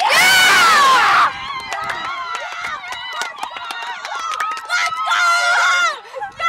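Girls screaming and shouting in celebration of a goal. One loud, high scream about a second long comes first, then overlapping excited shouts and chatter with small knocks and bumps, and another high cry near the end.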